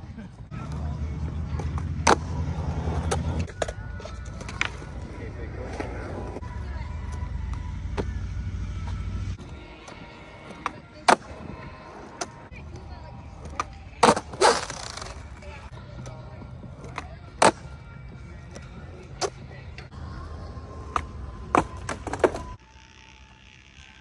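Skateboard wheels rolling on concrete with a low rumble, broken by repeated sharp clacks of the board hitting the ground as tricks are popped and landed. The rolling stops shortly before the end.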